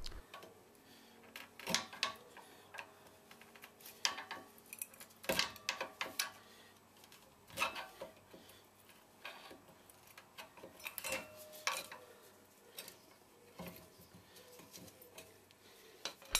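Irregular metallic clicks, taps and light scrapes as a screwdriver pries a rear brake caliper off its pads and disc. There are a dozen or so separate clinks, a few carrying a short ring.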